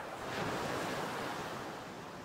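Rushing surf-and-wind sound effect, thin and high with no bass, swelling over the first half-second and then slowly fading. It has not yet been pitched down.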